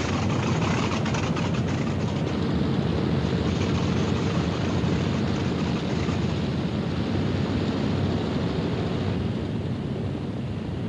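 Steady, dense drone of a B-17 Flying Fortress's radial engines and propellers running, the upper part of the sound thinning slightly near the end.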